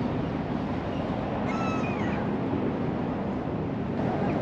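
Steady outdoor background noise, with one short mewing call that falls in pitch about one and a half seconds in.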